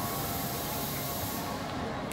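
Steady background noise of a busy shopping mall: an even hiss with a faint hum under it, and a brighter high hiss over the first second and a half.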